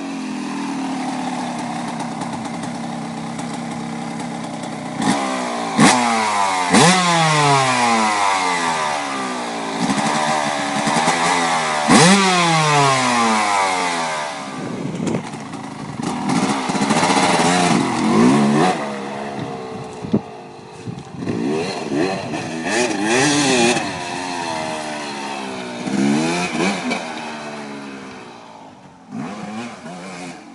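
2005 Yamaha YZ250's single-cylinder two-stroke engine revving hard as the dirt bike is ridden, its pitch climbing sharply with each twist of the throttle and falling away as it backs off, loudest about five to twelve seconds in. The engine grows fainter near the end as the bike moves off.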